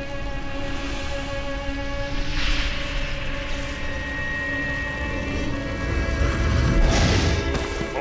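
Dark, sustained film score over a low rumble, with a rushing burst about two and a half seconds in and a heavier blast around seven seconds in: fire-spell and explosion sound effects in a wand duel.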